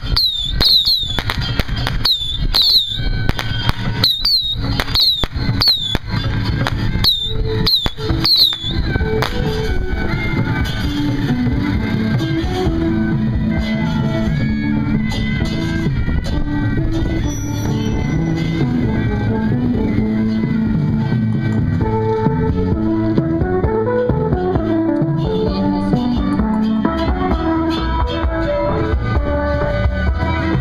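A string of firecrackers crackles rapidly for the first eight seconds or so, over repeated falling high whistles. After that, music with a moving melody plays on steadily.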